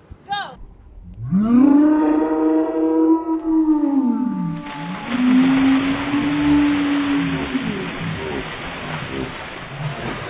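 People screaming as cold water is dumped over them from large coolers: one long scream that rises and falls, then a second long scream and shorter cries. From about halfway through, the water comes down in a steady rushing splash over them and the ground.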